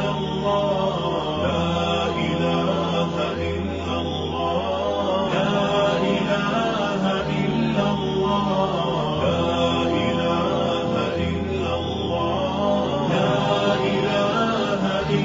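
Background devotional chant music: a low drone that steps to a new note every couple of seconds, under a wordless melodic line.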